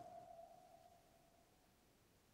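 Near silence, with the faint tail of a single pure-tone sonar ping sound effect fading away over about a second and a half.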